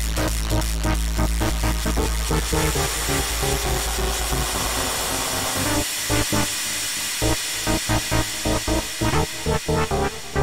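Electronic dance music built on synthesizers: a fast pulsing synth pattern over deep bass smooths into a held chord, then about six seconds in the bass cuts out and short, choppy synth stabs take over.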